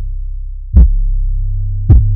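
A trap beat stripped down to its deep 808 bass: one sustained sub-bass note, with two kick drum hits about a second apart, the first about three-quarters of a second in and the second near the end.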